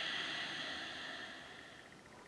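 A woman's slow audible breath, a soft hiss that fades away over nearly two seconds.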